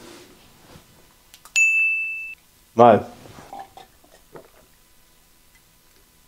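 A single bright ding, a clear bell-like ring just under a second long, about one and a half seconds in; it is a counter sound effect marking each capsule in the count.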